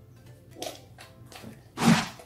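Soft, wet squelches of homemade jiggly slime being squeezed and kneaded by hand, then a loud, short wet splat near the end.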